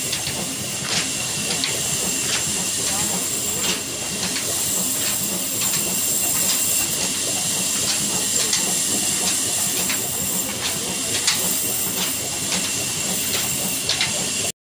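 Old stationary diesel 'black engine' running steadily, driving a flour mill through a long flat belt. A continuous hissing machine noise with a light, regular click about every two-thirds of a second.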